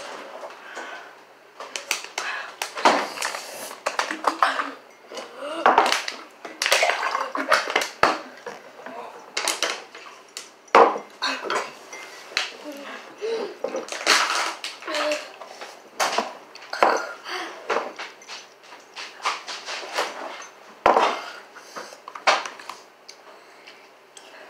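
Forks clinking and scraping against bowls during eating, in many scattered sharp clatters, with short bits of voice between them.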